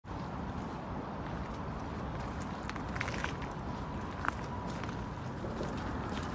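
Steady low outdoor rumble with a few faint clicks about three seconds in and one sharper tick just after four seconds.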